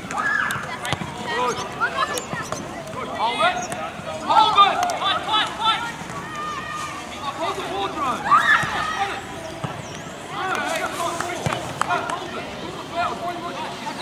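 Indistinct shouting voices of coaches and players, coming in bursts, loudest about four to six seconds in and again around eight seconds in.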